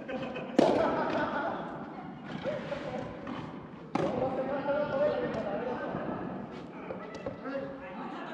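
Two sharp hits of a soft tennis ball off a racket, about three and a half seconds apart, echoing in a large indoor hall, with voices calling out between them.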